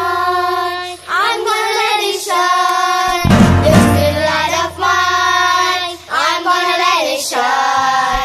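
Children's choir singing in long held notes, each phrase a second or two, over a musical accompaniment with a steady low bass.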